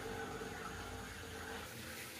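Faint, steady water sound from a home aquarium.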